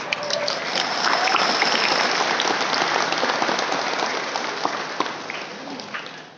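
Audience applause: many hands clapping together in a dense patter that dies away near the end.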